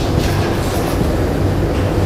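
Marker pen writing on a whiteboard, a few faint scratchy strokes near the start, over a loud steady low rumble of background noise.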